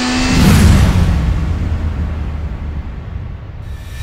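Outro logo sound effect: a rising swell that breaks into a deep boom about half a second in, then a long low rumble that slowly fades.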